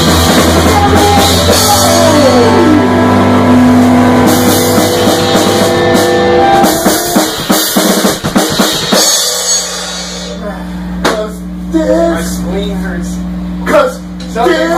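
A punk rock band playing loud in a garage: electric guitar and bass with drums, ending about nine seconds in after a run of drum hits. After that, the amplifiers hum steadily, with a couple of single drum hits and faint voices.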